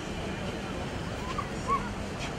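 Steady background noise of a large outdoor crowd of standing children, with two short high yelps about a second and a half in, the second the louder.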